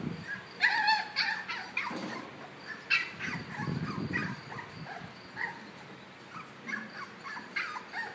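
Puppy whining and yipping in short high cries, several close together in the first three seconds and fainter ones later, as if asking to be let out.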